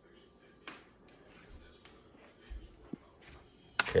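Quiet room with a few faint clicks and a soft low thud about two and a half seconds in: handling noise while the camera is moved.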